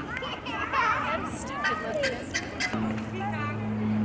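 Children's voices chattering and calling, with adult voices in the background. A little under three seconds in, a steady low hum starts and carries on.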